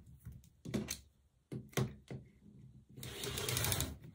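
A clear acrylic quilting ruler and fabric being handled on a cutting mat: a series of short taps and knocks, then about a second of steady rubbing near the end.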